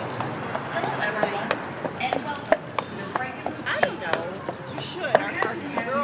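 A horse's hooves clip-clopping on an asphalt street as a horse-drawn carriage passes, a string of sharp, irregular clacks.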